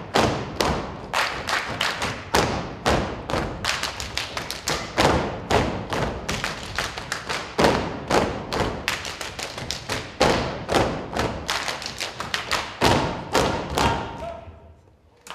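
Hungarian folk dancers' rhythmic stamping and boot-slapping, several sharp strikes a second with no music beneath, stopping at the very end.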